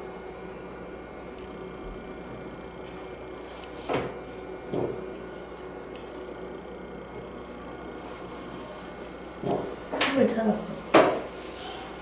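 Quiet classroom room tone with a steady hum. There are two sharp knocks about four seconds in, and a cluster of knocks with brief low voices near the end.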